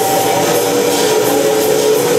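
Loud live experimental noise music with an amplified electric guitar: a dense, steady wash of noise with a few held pitches underneath.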